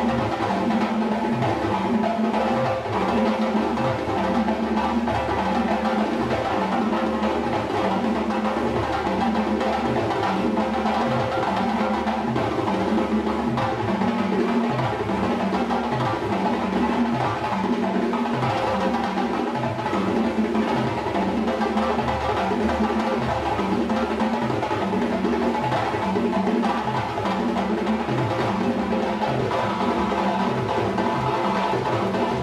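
Live drumming on a set of drums: a steady, continuous rhythm with a low beat repeating at an even pace.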